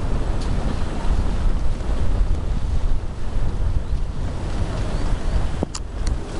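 Strong wind buffeting the camera microphone: a loud, steady low rumble, with a brief click near the end.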